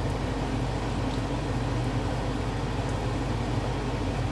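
Egg rolls shallow-frying in oil in a nonstick pan: a steady sizzle over a low, even hum.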